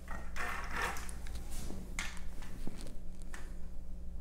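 Horizontal window blinds being tilted shut by hand: a rustle of the slats in the first second, then a few light separate clicks and taps.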